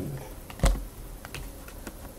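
Tarot cards being handled on a table: one card knocked down with a soft thump about half a second in, then a few faint light clicks.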